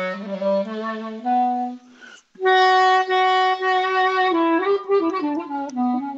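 Solo clarinet playing a Thracian folk melody. A run of quick notes breaks off for a breath about two seconds in, then comes a long held note that steps down through an ornamented descending line.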